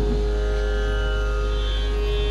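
Steady sruti drone of a Carnatic concert, one unchanging pitch with its overtones holding the key, over a low electrical hum.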